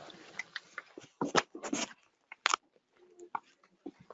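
Irregular clicks and knocks close to the microphone, with a cluster of loud ones between about one and two seconds in and a sharp single one about halfway.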